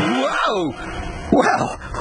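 Two short, high, falling yelp-like cries, one near the start and one about a second and a half in, from a cartoon character.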